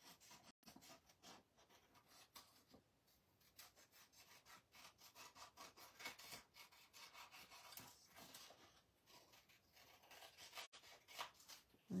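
Scissors snipping around the edge of patterned paper glued to a paper envelope, with the paper rustling as it is handled: a quiet run of small, irregular clicks and rustles.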